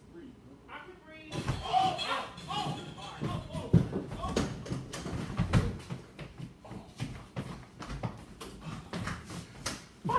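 Kitchen clatter: a quick, irregular run of sharp knocks and bangs, with a slam among them, starting about a second in, with muffled voices mixed in.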